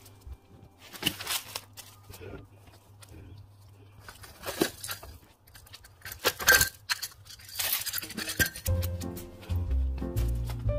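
Scattered clinks and knocks of small plastic plant pots, wire baskets and gravel being handled, the loudest about six and a half seconds in. Background music comes up near the end.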